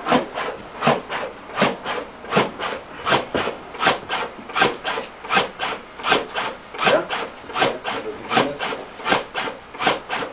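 AutoPulse mechanical CPR device running on a manikin, its motor cinching and releasing the band around the chest in a steady, even rhythm of about two and a half strokes a second.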